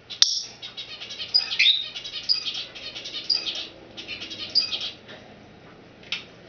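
Timneh African grey parrot chirping and whistling in a rapid, warbling string of short notes, in several bursts over about five seconds, opening with a sharp click.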